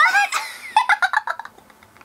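Women giggling in short bursts that trail off about a second and a half in.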